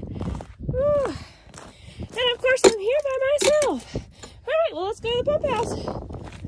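A voice making wordless, pitched sounds: a few short rising-and-falling notes in groups, with no words.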